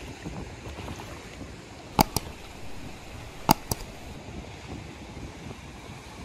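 Steady outdoor wind and surf noise at a rock-pool beach, with two quick pairs of sharp clicks, about two seconds in and again about three and a half seconds in.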